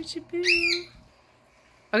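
A caged pet bird gives one short chirp about half a second in, after which it goes near silent.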